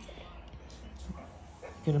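A dog holding a rubber ball in its mouth makes a faint, brief vocal sound over low room noise. A woman's voice starts just before the end.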